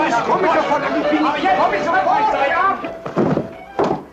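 Several voices talking at once, an indistinct chatter, for about the first three seconds, then two dull thuds near the end.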